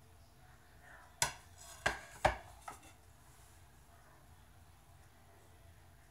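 Ceramic plates clinking against each other or the countertop: three sharp knocks in quick succession, a little over a second in, then a fainter fourth.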